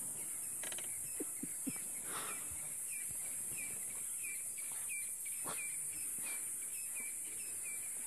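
Natural bush ambience: a steady high-pitched hiss, with a short chirp repeating about three times a second from a second or so in, and a few soft knocks near the start.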